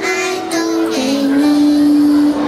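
A group of children singing in unison, moving through short notes and then holding one long note from about a second in.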